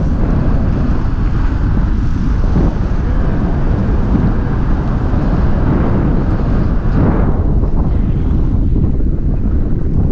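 Airflow of a paraglider in flight buffeting the camera's microphone: a loud, deep, steady rumble of wind noise.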